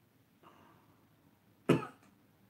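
A man coughs once, short and sharp, near the end, with a faint short sound about half a second in.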